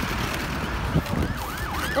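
Busy street traffic noise, with an emergency-vehicle siren coming in about a second in as quick, repeated rising-and-falling sweeps.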